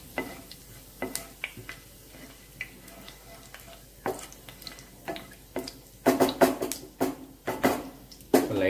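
Cumin seeds and whole spices crackling in hot oil in a nonstick frying pan, with scattered sharp pops. About six seconds in comes a dense run of knocks and scrapes as a spatula stirs against the pan.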